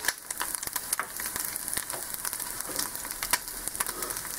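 Egg frying in a cast-iron skillet set a little hot: steady sizzling dotted with many small sharp pops and crackles.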